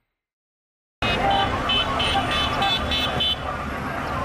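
Silence for the first second, then busy street traffic cuts in: running car engines, a car horn tooting over and over in short blasts, and the chatter of people.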